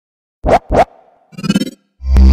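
Two quick turntable-style record-scratch sound effects, then a short pitched musical hit about a second and a half in, as the audio sting of a logo ident.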